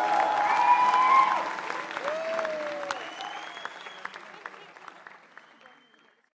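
Concert audience applauding and cheering as a song ends, with a few pitched whoops in the first seconds. The applause then dies away steadily to near silence.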